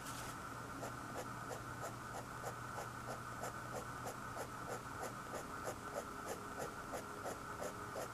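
Fine-tip drawing pen scratching short hatching strokes on paper in a steady rhythm, about four strokes a second.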